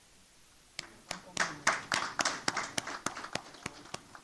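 A small audience clapping briefly. It starts about a second in, is densest for the next second or two, then tapers off to a few scattered claps.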